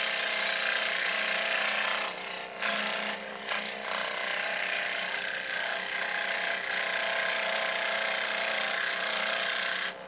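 Scroll saw running, its blade cutting through plywood: a steady motor hum under the rasping noise of the cut. The cutting noise dips briefly twice, about two and three seconds in.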